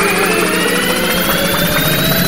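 Electronic whooshing transition sound effect: several tones rise slowly in pitch together over a steady rushing noise, a time-machine jump effect.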